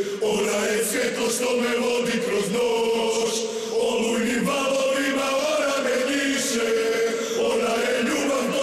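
A group of men chanting in unison over music, holding long, steady notes.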